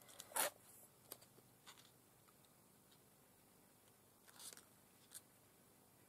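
Quiet handling of craft materials on a tabletop: a short, sharp sound about half a second in, a few faint clicks, then a brief scratchy rustle and a click near the end.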